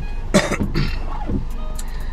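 A man coughs once, a short sharp cough about a third of a second in.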